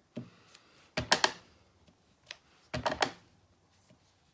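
Clear acrylic stamp block being tapped and pressed down while stamping a ground image over and over onto a card: short clusters of light clacks about a second in and again near three seconds, with a faint tap between.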